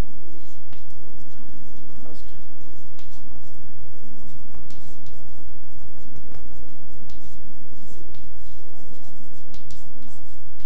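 Chalk scratching and tapping on a chalkboard as a line of script is written, in many short strokes over a steady low background hum.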